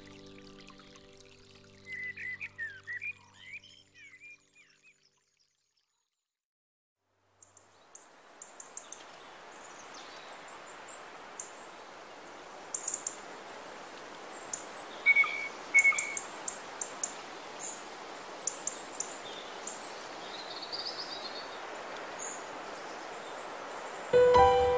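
A soft music track fades out with bird-like chirps over it, then after a couple of seconds of silence a mountain stream fades in, rushing steadily over rocks, with small birds chirping and whistling above it.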